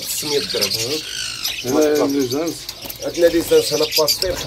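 Many caged birds chirping and squawking together, with one descending squawk about a second in.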